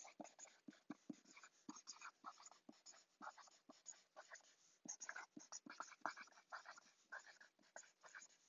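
Faint scratching of writing on paper, in short, irregular strokes.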